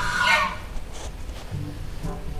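A short bird call with a pitched, bending tone that ends about half a second in, followed by quieter low background noise.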